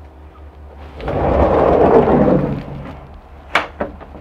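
A wooden RV interior door being moved and latched: a rumble lasting about two seconds, then two sharp clicks of its latch near the end.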